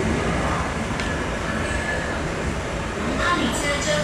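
MTR C-Train metro train running through an underground station platform without stopping, a steady rumble of wheels and running gear heard through the platform screen doors. Voices come in near the end.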